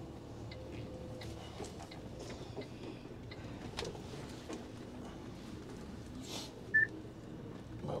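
Low, steady hum of an Iveco HGV's diesel engine heard from inside the cab as the lorry rolls slowly into a yard, with a few faint clicks and one short beep late on.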